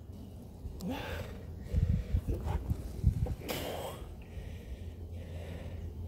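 Waste water glugging and gurgling as it drains from a 21-gallon portable RV waste tote through a sewer hose, with irregular low glugs about two seconds in and a short rush of air about three and a half seconds in.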